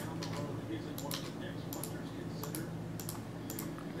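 Computer keyboard keystrokes and mouse clicks, scattered and irregular, over a low steady hum.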